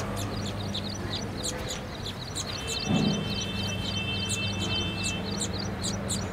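Small birds chirping, short high chirps several a second, over a steady low hum. A dull thump comes about halfway through, and a steady high tone sounds for a couple of seconds after it.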